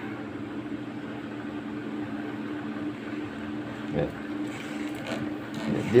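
A steel spring bender rubbing and scraping faintly as it is pushed by hand into 20 mm PVC conduit that fits it tightly, over a steady low electrical hum.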